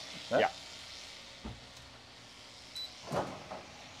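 Wall-mounted split-system air conditioner being switched on at its manual button: a soft knock about a second and a half in, then a single short, high electronic beep, over a steady low hiss.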